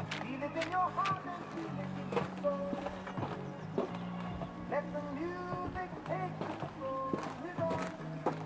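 Background music from a radio: a love song with a singer's voice over a steady bass line, with a few sharp knocks and clicks scattered through it.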